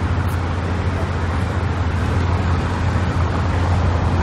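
Steady outdoor road-traffic noise: a continuous low rumble under an even hiss, with no distinct events.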